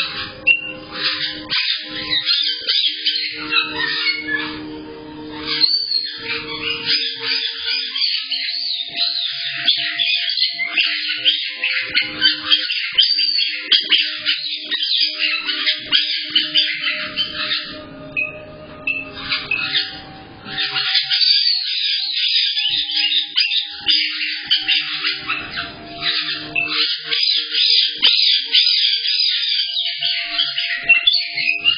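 A flock of caique parrots chirping and squawking without a break, high-pitched and dense, heard through a home security camera's microphone.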